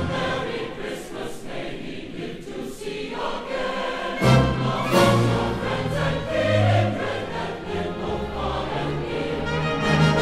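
A choir singing a Christmas carol, the music thinner at first and growing fuller, with low notes entering, about four seconds in.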